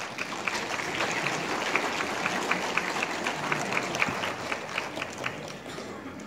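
Audience applauding, many hands clapping together, tapering off near the end.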